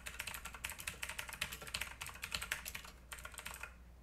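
Fast typing on a computer keyboard: a dense run of keystrokes that stops shortly before the end.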